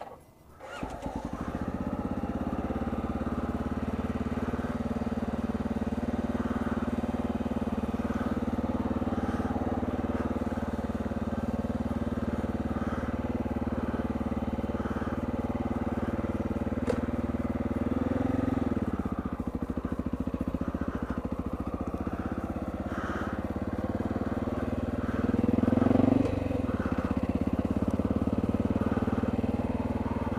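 Dual-sport motorcycle engine running at low revs as the bike pulls away and rolls along slowly. The engine note rises and drops back twice, about two-thirds of the way through and again near the end, as the throttle is opened and eased.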